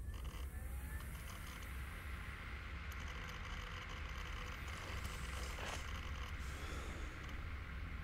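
Steady low rumble with an even hiss over it, the film's ambient background sound, with no distinct events.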